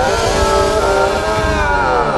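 A loud, buzzy, distorted cartoon voice held in one long cry, its pitch rising a little and then sinking, over background music.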